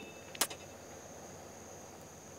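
A pause in speech with faint background noise and a thin, steady high-pitched whine, and one brief click about half a second in.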